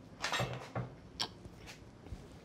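Faint knocks and clicks of a small container being picked up and handled on a kitchen counter: a few soft sounds in the first second, then a short sharp click just past halfway.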